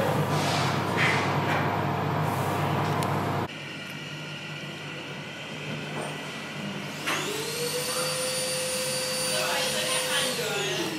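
Steady low machinery hum in the engine room of the SS Great Britain's reconstructed engine, cutting off abruptly about a third of the way in to a quieter background. About seven seconds in, a machine whine rises in pitch and then holds steady.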